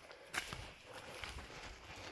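Faint footsteps on the stony floor of a mine tunnel, with one sharp scuff about a third of a second in.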